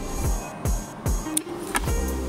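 Background music with a steady beat of deep, dropping kick-drum thumps and crisp high percussion.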